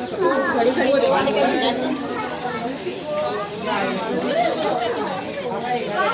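Background chatter of several people talking over one another, with no one voice standing out.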